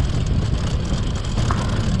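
A vehicle travelling steadily along a rough dirt road: an even, low engine rumble mixed with road and wind noise, heard from on board. A short faint tick about one and a half seconds in.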